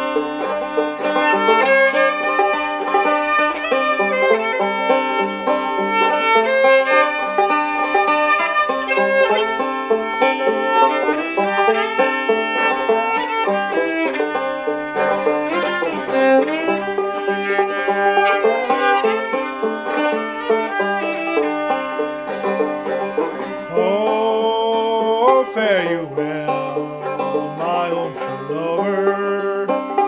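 Old-time instrumental break on a fretless Enoch Dobson open-back banjo, three-finger picked in double-C tuning (gCGCD), with a fiddle cross-tuned GDAD playing along. There are sliding notes in the second half.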